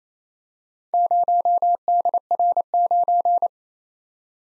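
Machine-sent Morse code: a single pure tone near 700 Hz keyed into fast dashes and dots, spelling the four characters 0, D, R, 9. It starts about a second in and stops about half a second before the end.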